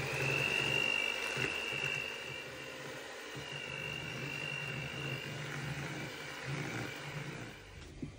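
Electric hand mixer running, its beaters blending vanilla pudding into whipped margarine and powdered sugar for a buttercream. A steady motor whine over a low hum, stopping near the end.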